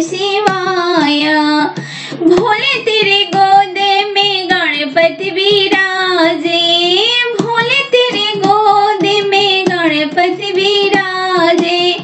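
A high voice singing a Bhojpuri folk song of Shiva's wedding (Shiv vivah geet), with long held and gliding notes, over light percussion clicks.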